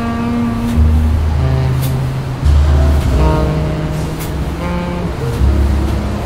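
Slow smooth jazz: long upright-bass notes under sustained chords, with a light cymbal stroke about once a second. A steady ambient hiss runs beneath the music.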